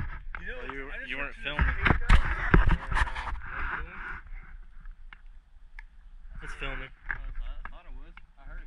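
Indistinct voices talking, in two stretches with a lull between, over a steady low rumble, with a few sharp knocks in the first few seconds.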